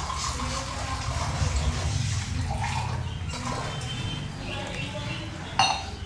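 Wai Wai noodles simmering and bubbling in a steel kadhai over a gas burner's steady low hum as a little more water is added. There is one sharp metallic clank near the end.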